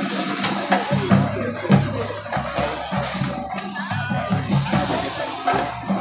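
High school marching band playing, brass tones over a steady drum beat; the full band comes in all at once at the start.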